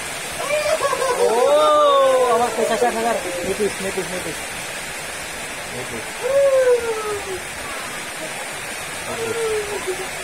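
Steady hiss of rain. A man's drawn-out, wordless calls rise and fall over it for the first few seconds, with shorter calls at about six and nine seconds in.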